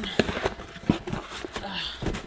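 Cardboard box being pulled open by hand: flaps scraping and rustling, with two sharp snaps in the first second.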